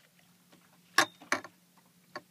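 Two sharp knocks about a third of a second apart as a crappie is handled in an aluminium-hoop landing net, over a faint steady low hum.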